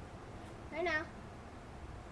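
A single short meow-like call about a second in, rising then falling in pitch, over faint outdoor background.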